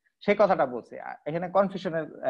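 A man's voice lecturing in continuous speech, with a brief pause about a second in.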